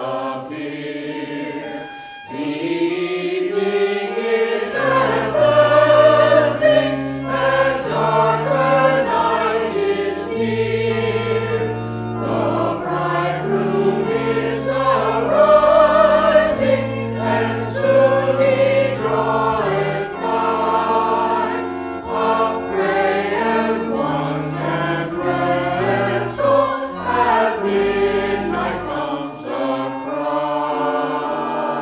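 Mixed church choir of men and women singing an anthem, accompanied by a pipe organ whose sustained bass notes come in about four or five seconds in and move in steps beneath the voices.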